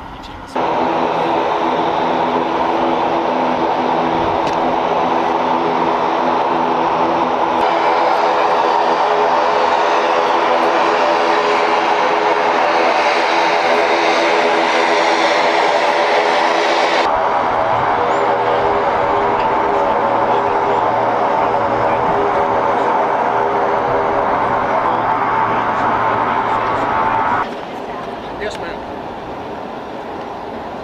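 Helicopter turbine engine running steadily on the ground: a loud, steady whine over a hum. The sound changes abruptly about 7.5 and 17 seconds in and drops away near the end.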